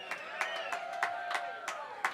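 Light audience applause in a bar: a handful of separate hand claps over a faint held cheer.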